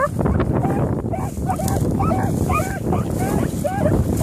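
Hounds baying on a chase: a quick run of short, high yelping cries, two or three a second, some overlapping, over a low rumble of strong wind on the microphone.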